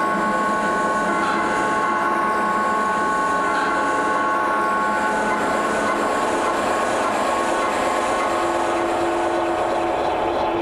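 Modular synthesizer drone: several steady held tones over a dense noisy hiss, with no beat. The highest tone fades about halfway through, and a lower tone swells near the end.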